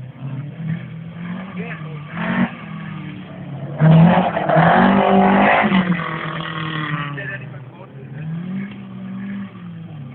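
Rally car engine revving hard and dropping back through gear changes as the car slides across a dirt stage, loudest for about three seconds from around four seconds in.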